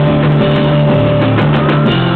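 Live rock band playing loudly, with keyboard and drums.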